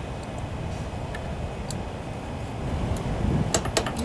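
A few light metallic clicks and taps from a feeler gauge and hand tools handled against a small engine's ignition coil and flywheel, with a short cluster of clicks near the end. A steady low rumble runs underneath.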